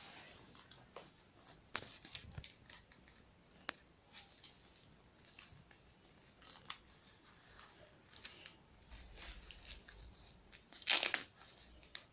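A disposable diaper rustling and crinkling as it is wrapped and fastened on a plastic doll, with scattered small clicks and a louder rip of an adhesive tape tab near the end.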